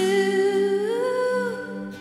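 Worship music: a woman's voice sings one long held note that swells up in pitch and settles back, over a soft sustained chord. The voice fades out near the end, leaving the quieter backing.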